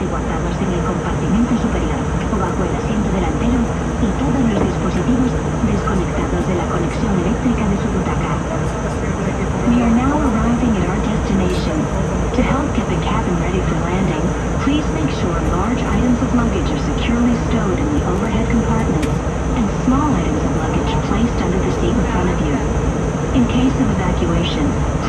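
Steady cabin noise of an Airbus A321 airliner in flight, with indistinct passengers' voices murmuring over it.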